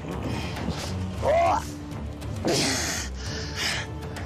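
Background film score with a steady low drone, cut by two short, loud strained cries from a man, about a second in and again past the halfway point.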